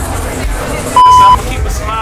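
A single loud, steady electronic bleep lasting about a third of a second, about a second in. It is a censor bleep edited over the speech to cover a word.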